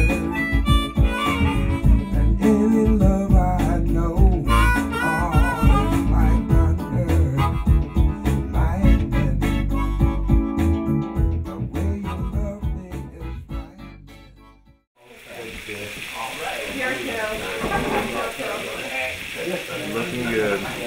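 Blues harmonica played with wavering, bent notes over a band backing; the music fades out about 14 seconds in. After a brief gap, chicken pieces sizzle steadily as they fry in hot oil in a cast-iron pot.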